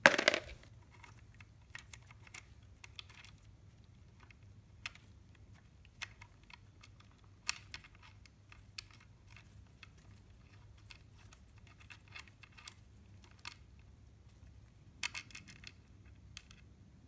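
A small steel bolt clatters onto metal right at the start, the loudest sound, followed by scattered light metallic clicks and taps as the transmission valve body bolts are handled and pulled out, with a quick run of clicks near the end.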